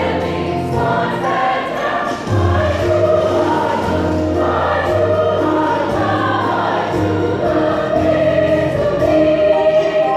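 High school chorus singing a full, steady passage of a choral piece.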